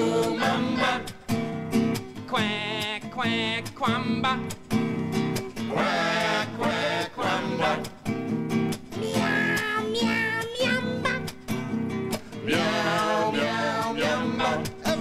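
A man and several puppet voices singing a lively children's song, accompanied by a strummed nylon-string classical guitar. The guitar chords run steadily underneath while the singing comes in phrases, some notes held with a wavering vibrato.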